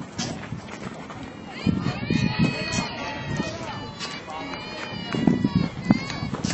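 Voices of softball players and onlookers calling out and chattering across the field, with several high-pitched calls overlapping in the middle.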